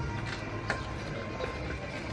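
Background music over the clicking and rattling of a rented bicycle being ridden, with a couple of sharper clicks in the first second.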